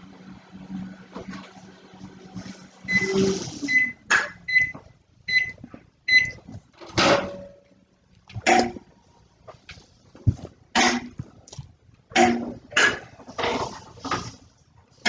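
A kitchen appliance beeps five times, evenly spaced, about three seconds in. From about seven seconds a dog barks in short, separate barks, several times over.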